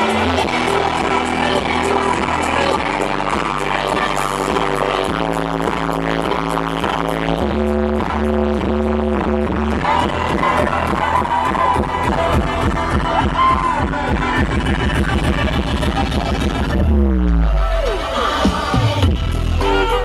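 Live electronic dance music played loud through a festival stage's sound system, heard from inside the crowd, with heavy bass. The bass gets heavier about halfway through, and a falling pitch sweep near the end drops into deep bass.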